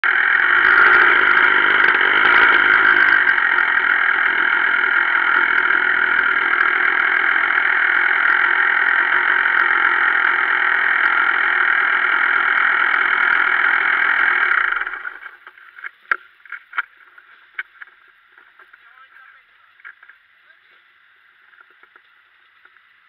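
Enduro dirt bike engine running steadily, heard muffled through a handlebar camera, then switched off about fifteen seconds in. A few sharp clicks and knocks follow over the quiet.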